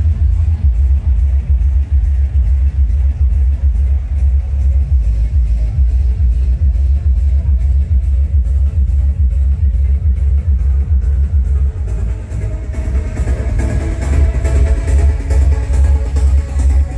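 Loud electronic dance music played through a truck-mounted sound system, with heavy bass and fast, even hi-hat ticks. A brighter layer comes in about thirteen seconds in.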